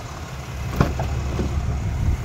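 Rear door of a pickup's crew cab pulled open, with a sharp latch click a little under a second in, over a steady low idling-engine rumble.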